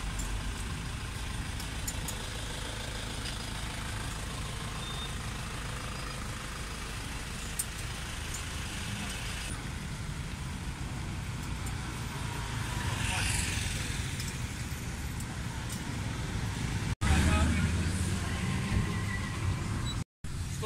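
Road traffic running steadily along a street, with indistinct voices mixed in. In the last few seconds, after a brief dropout, a louder low rumble takes over.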